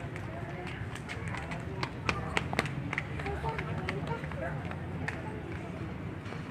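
Indistinct voices of people talking, over a steady low rumble, with scattered sharp clicks and knocks throughout.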